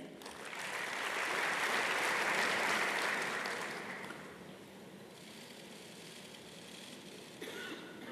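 Audience applauding. It swells over the first second or two and dies away about halfway through, leaving only faint hall noise.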